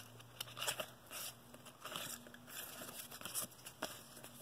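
Stack of old cardboard baseball cards being thumbed through by hand: light, scattered flicks and rustles of card sliding against card.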